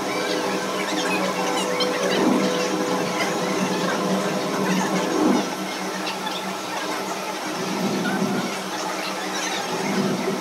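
Electronic soundtrack of an immersive space exhibit: held synthesizer tones at several pitches, swelling about two seconds in and again about five seconds in.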